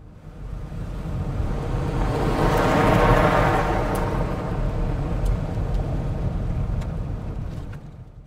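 A rushing, rumbling noise that swells up over about three seconds, holds, and fades away near the end, with a few faint clicks.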